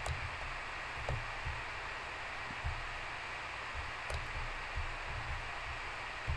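Steady microphone hiss and low room rumble, with a few faint clicks.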